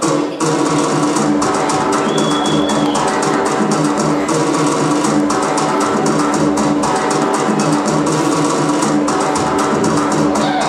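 Karaga folk dance music: fast, dense drumming over a repeating low melodic figure, with a brief high held tone about two seconds in.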